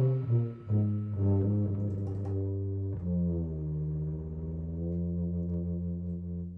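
Brass band music. After a brief dip, low brass instruments play sustained notes, settling about halfway through into one long held chord.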